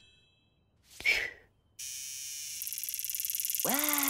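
Cartoon cicada buzzing: a high, rapidly pulsing buzz that starts about two seconds in and grows louder, after a short swish about a second in. Near the end a cartoon character gives a drawn-out vocal exclamation over it.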